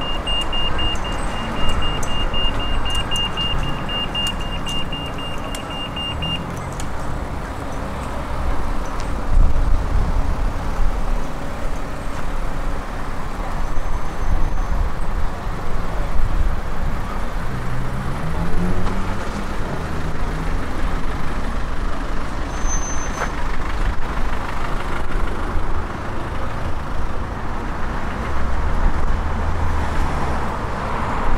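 Street traffic: cars passing at town speed in a steady rumble with swells as they go by. For the first six seconds or so a pedestrian crossing's signal beeps rapidly at a high pitch, the audible cue that it is safe to cross.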